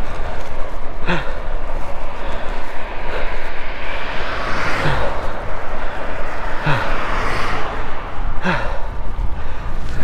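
Wind rushing over the microphone and a kick scooter's wheels rolling on tarmac as it coasts downhill. Four short falling sighs from the rider come about one, five, seven and eight and a half seconds in.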